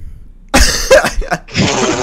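Loud, harsh bursts from people's voices over a voice call, starting about half a second in and recurring in several short pieces, cough-like rather than words.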